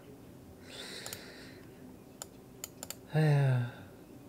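A few sharp, isolated clicks like computer keys, with a soft breathy hiss about a second in, then a brief hum from a man's voice, falling in pitch, near the end.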